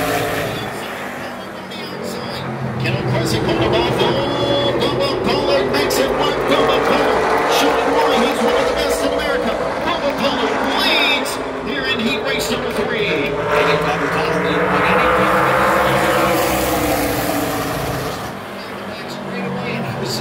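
A field of six short-track race cars running at full throttle around a short oval just after the start. The engines grow loud twice as the pack comes by and fade between passes.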